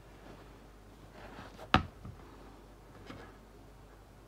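Faint handling of a laptop charger's barrel plug as it is brought to the laptop's charging port, with one short sharp click a little before halfway.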